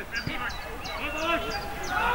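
Players' voices calling out across a football pitch, with one dull thud of a ball being kicked shortly after the start. A high short chirp repeats about three times a second.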